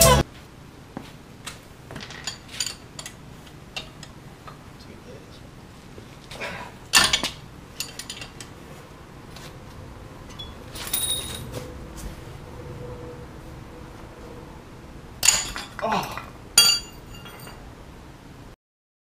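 Scattered metallic clinks and knocks of hand tools and parts on metal and concrete while working on a Jeep front hub, with a louder cluster of clatters near the end.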